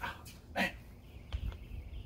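A man's short pained groans, an 'oh, man' after striking himself hard on the head with a sword. Two brief vocal sounds, the second about half a second in.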